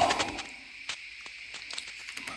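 A spoken word trailing off at the start, then a faint steady hiss with a few light clicks from the controls of a Nikon mirrorless camera on a tripod, as its exposure is adjusted.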